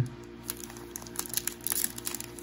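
The wrapper of a Topps baseball card pack crinkling in quick, irregular crackles as it is handled and opened by hand, starting about half a second in, over steady background music.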